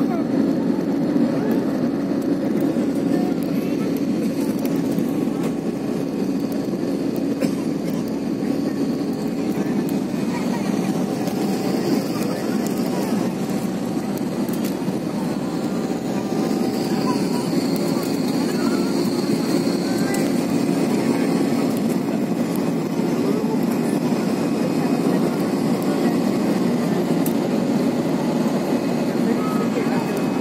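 Steady cabin noise of a jet airliner in its climb: the engines and rushing air make an even low rush that never lets up, with a faint high tone for a few seconds just past the middle.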